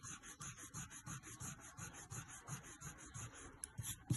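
Eraser rubbing quickly back and forth on paper, erasing a pencil line, in fast, even strokes of about five a second.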